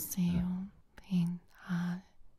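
Experimental electronic music made of short, chopped whispered voice fragments: three breathy syllables in quick succession, each over a brief steady low tone.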